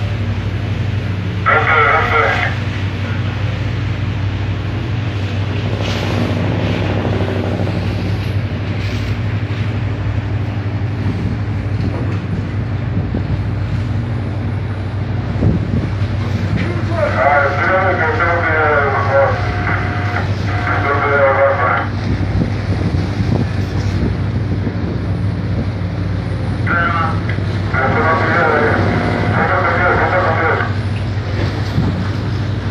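Steady low drone of a tuna purse seiner's engine and machinery. Bursts of unintelligible voices come over it briefly near the start, for several seconds past the middle, and again near the end.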